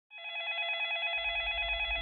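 A telephone ringing with a steady electronic trill that fades in at the start. A low rumble joins about halfway through.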